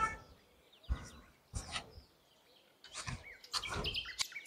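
Birds chirping now and then, with a few short knocks scattered through, between stretches of near silence.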